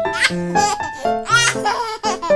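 Light piano background music with a burst of laughter laid over it twice, once just after the start and again about a second in.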